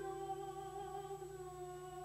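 A soprano holding one long, quiet, steady note in a contemporary art song, with the piano sustaining softly beneath.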